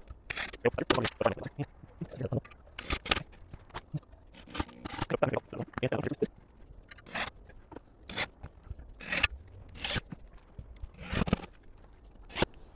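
Irregular scrapes, clicks and knocks of a corded drill, screws and a wooden bench board being handled, with no drill motor running.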